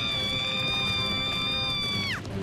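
A long, steady high note from the cartoon soundtrack, whistle-like and without wobble. It slides up into place at the start, stays level, and drops away at the very end, over quiet background music.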